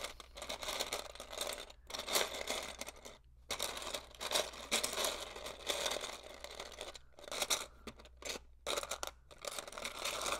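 Hands sifting through loose plastic LEGO pieces, a continuous rustling clatter of small bricks with a few brief pauses, as the builder searches for a particular piece.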